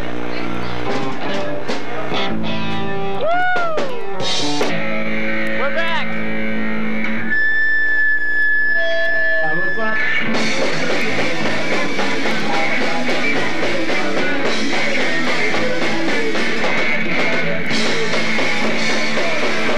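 Electric guitars sustaining chords and bending notes, then one high note held steady for about three seconds. About ten seconds in, the full rock band comes in loud with distorted guitars and drum kit.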